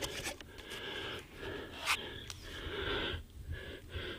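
Handling noise from a Reconyx trail camera's plastic case being worked open on a tree: rustling and rubbing with a few sharp clicks from its latch and cover, the loudest click about two seconds in.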